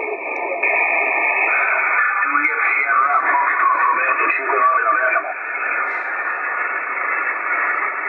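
Yaesu FTdx-10 HF transceiver's speaker playing single-sideband reception on 40 metres: a loud hiss of band noise with a voice station mixed in. The noise fills out within the first second or two as the noise reduction, notch and width filters are switched back off.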